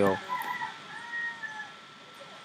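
A faint animal call in the background, one drawn-out call that rises and then falls in pitch about a second in, after a shorter call.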